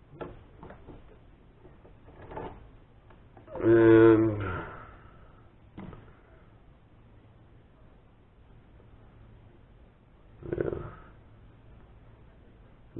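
Light clicks and knocks of a steel die holder and lathe parts being handled and pulled free, with one brief, louder pitched sound about four seconds in and another short rustle-like noise near the end.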